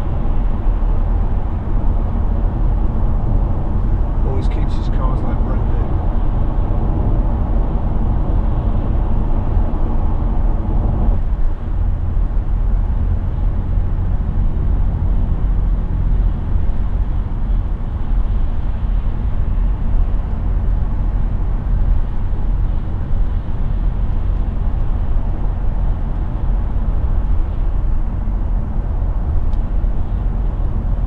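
Interior noise of a BMW 730d cruising at motorway speed: a steady rumble of tyres on the road mixed with the drone of its 3.0-litre straight-six diesel, heard from inside the cabin. The rush eases a little about eleven seconds in.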